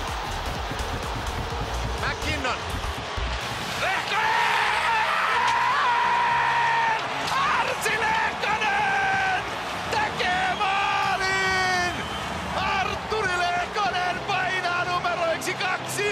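Ice hockey TV commentator calling the play in Finnish over arena crowd noise, his voice climbing into long, drawn-out shouts with a loud cry about eleven seconds in. A low beat sits under the first few seconds.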